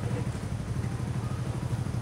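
Steady low engine drone of street traffic, with a fine, even pulsing and no change in pitch.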